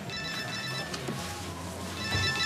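A telephone ringing with a high electronic ring: one ring of about three-quarters of a second just after the start, then a pause before the next ring.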